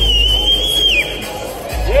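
A person in the audience whistling one long high note, held for about a second and sliding down at the end, over background music and crowd noise in the hall.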